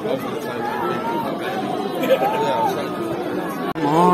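Football crowd on a terrace: many voices talking and calling out at once, with a long drawn-out shout about halfway through. The sound cuts out for a moment just before the end.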